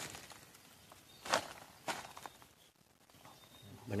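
Two short rustles in dry leaves and straw about half a second apart, followed by a few faint ticks.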